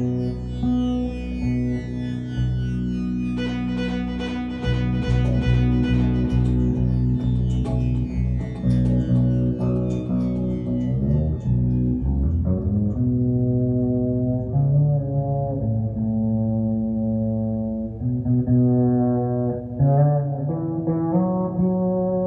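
Solo extended-range electric bass guitar playing a slow instrumental with chords and melody, notes held and ringing over one another. The tone is bright for the first half and turns mellower and darker after about twelve seconds.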